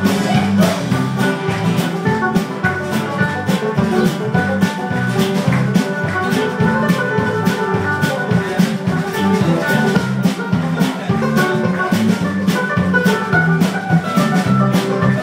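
Live band playing an instrumental passage without vocals, the drum kit keeping a steady beat under sustained pitched instruments.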